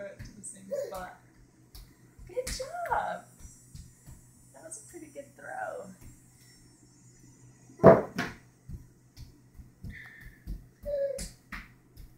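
A baby babbling in short calls that rise and fall in pitch, over soft low thumps and a steady low hum. About eight seconds in comes one sharp slap, the loudest sound.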